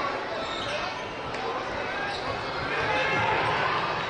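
A basketball bouncing on a hardwood court during live play, over the steady noise of an arena crowd and voices, with a few sharp knocks.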